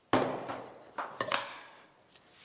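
A stainless steel mixing bowl set down hard with a loud clang that rings and fades, then a few sharp clinks of a spoon against the bowl about a second in as rice is mixed in it.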